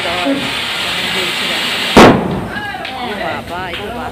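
Ground firework fountain spraying sparks with a steady hiss, then one sharp, loud bang about two seconds in. People's voices follow.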